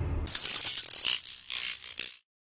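A ratcheting, clicking mechanical sound effect: a rapid run of crisp clicks starting about a quarter second in, swelling near the end and cutting off suddenly.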